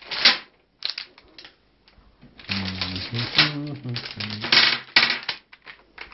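Quick clicks and rustles of a plastic bag being handled, then a person's voice for about three seconds, the words unclear.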